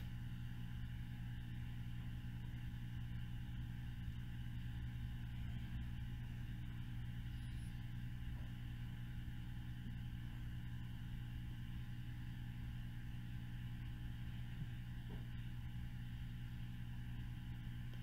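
Steady low hum of room background noise, with a few constant low tones and no distinct events.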